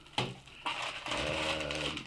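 Crumpled packing paper rustling and crinkling as it is pulled out of a cardboard box, with a drawn-out hesitant "uh" from the person in the second half.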